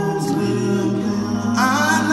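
Male vocal quartet singing a cappella in close harmony through microphones, holding a sustained chord. About one and a half seconds in, a higher voice comes in louder with a wavering line over it.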